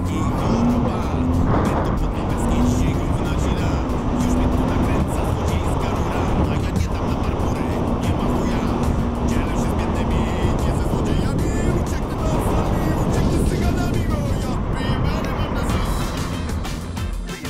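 A motorcycle being ridden at steady road speed: engine and road noise run steadily without pause, mixed with background music.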